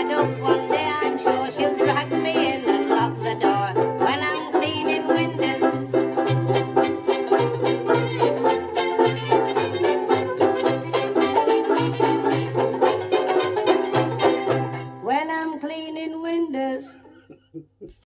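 Banjo ukulele strummed in a quick, steady rhythm over a pulsing bass line. About 15 seconds in the music ends on a held final note that fades out.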